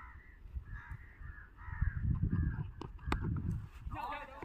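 Crows cawing over and over, with wind rumbling on the microphone. A sharp crack about three seconds in.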